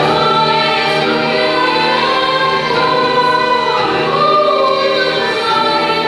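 Children's choir singing together, many voices holding sustained notes that shift in pitch as the melody moves.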